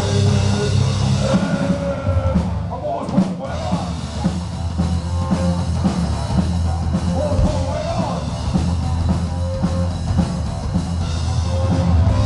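Live rock band playing at full volume, with drum kit, electric bass and electric guitar over a heavy low end, heard from the crowd. The sound thins out briefly about three seconds in, then runs on.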